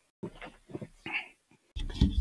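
A dog whimpering in a few short, soft whines.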